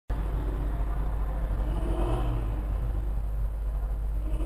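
Steady low background rumble, with faint, indistinct sound swelling slightly about two seconds in.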